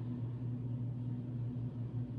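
A steady low hum over a faint hiss, unchanging throughout.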